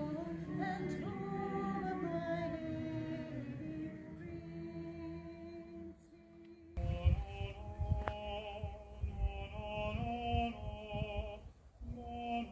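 Mixed a cappella choir singing, with a female soloist out in front. The singing dies away about five seconds in, and another sung passage starts abruptly, over low rumbling bursts on the microphone.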